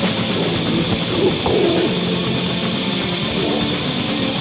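Raw folk black metal demo recording: electric guitars, bass and drums playing a dense, continuous passage.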